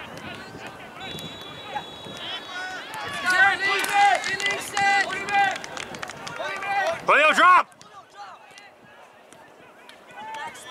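Players and spectators calling and shouting across an outdoor soccer field, several voices overlapping, busiest in the middle with one loud shout about seven seconds in. The sound then drops off suddenly to a quieter open-air background.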